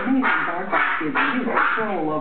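Chihuahua barking excitedly, about four sharp barks in quick succession.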